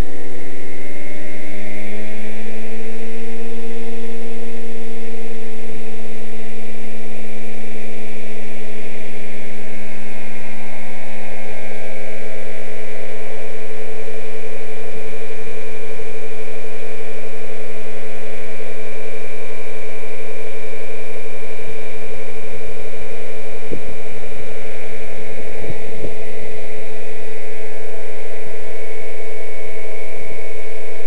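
Radio-controlled Thunder Tiger model helicopter in an MD 369 scale body spooling up: a whine that rises in pitch over the first few seconds, then holds a steady high whine as it lifts off and flies.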